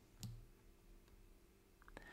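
Near silence: room tone, with a faint short click about a quarter second in and another tiny click near the end.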